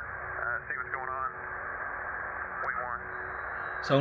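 Steady hiss of a narrow-band radio channel, with a few faint snatches of a voice coming through it about a second in and again near three seconds.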